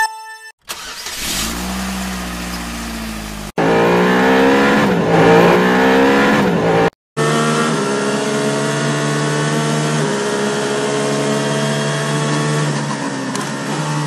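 Racing car engine sound effects, cut together. A low engine rumble is followed by a few seconds of revving with the pitch sweeping up and down. After a brief silence comes a steady high engine note held for about seven seconds.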